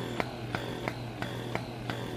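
Two S12 wearable electric breast pumps running at suction level 1: a low steady hum with soft, evenly spaced clicks about three times a second as the pumps cycle.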